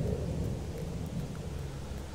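Steady low rumble of outdoor background noise with a faint hiss above it.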